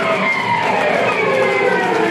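Loud amplified electric guitar, several tones sliding down in pitch together over about two seconds.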